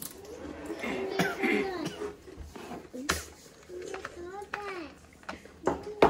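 Young children's voices talking quietly, with a few short sharp clicks.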